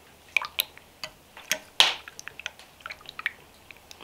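A spoon stirring a milk and egg mixture in an earthenware pipkin: liquid sloshing, with irregular clinks and taps of the spoon against the pot's sides. The loudest tap comes just under two seconds in.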